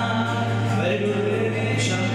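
Young man singing into a microphone while playing an acoustic guitar, holding one long low note through the phrase.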